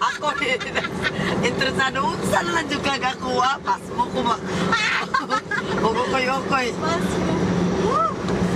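People talking inside a moving car's cabin, over the steady low hum of the engine and road.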